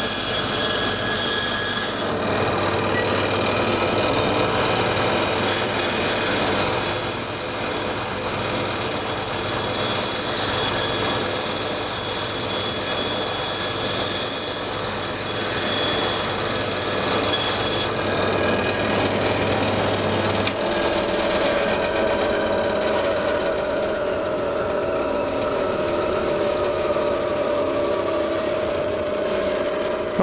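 Bandsaw with a quarter-inch blade running and cutting a taped stack of thin timber strips along a curved line. It is a steady whine of several held tones that changes character a few times during the cut.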